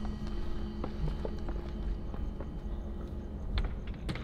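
Footsteps: scattered, irregular steps and small knocks over a steady low rumble.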